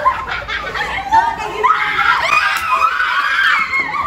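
A group of people screaming in fright, mixed with laughter; high-pitched screams come thickest through the second half.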